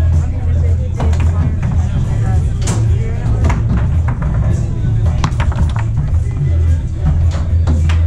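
Foosball play: scattered sharp clacks of the ball being struck by the rod-mounted men and knocking about the table, over background music with a strong steady bass and voices in the hall.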